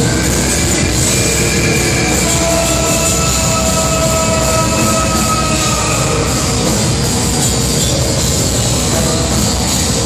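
Black metal band playing live at full volume, with dense drums and distorted guitars; a long, level note is held above the band from about a second and a half in until about six and a half seconds.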